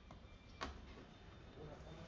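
Faint background noise with one sharp click about half a second in, as the windshield-pillar trim is worked by hand.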